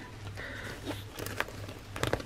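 Faint rustling and a few light clicks of stationery being handled and pushed into an open fabric zip pouch.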